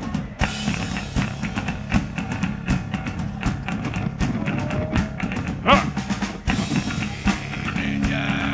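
Live metal band playing loud in a club: loose, irregular drum kit hits and cymbal crashes over guitars, with no steady beat yet, ahead of the song proper.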